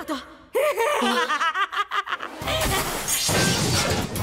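A cartoon character laughing, then about two and a half seconds in a loud shattering crash sound effect, over background music.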